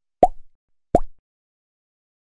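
Two short pop sound effects about three quarters of a second apart, each a quick blip that drops in pitch: the click sounds of an animated subscribe button and its notification bell appearing.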